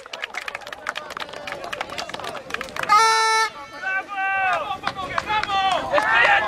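Footballers' voices shouting on an open pitch in a goal celebration, with a quick run of sharp clicks through the first half and one held, steady-pitched call about three seconds in.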